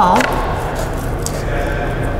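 A drawn-out spoken word at the start, then a steady hiss and low hum of background noise with no distinct events.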